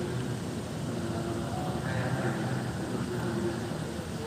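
Indistinct murmur of several voices talking at once over a steady low background hum, with no single clear speaker.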